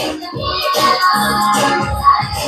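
Dance song with a steady beat and a singing voice, played over a hall's stage loudspeakers.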